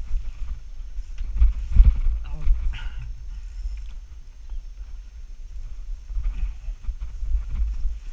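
Wind buffeting the microphone and a folding bicycle rattling as it rolls downhill over bumpy grass, an uneven low rumble that is loudest about two seconds in.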